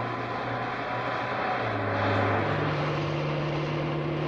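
Car engine and road noise from a dramatized night drive, over a low droning tone that steps up in pitch twice partway through.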